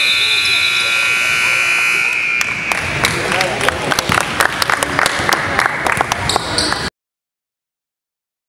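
Gym scoreboard buzzer sounding a steady high tone, marking the end of the quarter; it stops about two and a half seconds in. Spectators then clap until the sound cuts off about seven seconds in.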